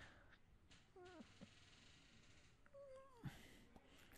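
Near silence broken by two faint, brief pitched cries, one about a second in and one near three seconds in, the second sliding down in pitch at its end.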